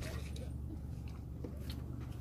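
A few faint taps and slaps as a landed small shark flops on a metal grating deck, over a steady low hum.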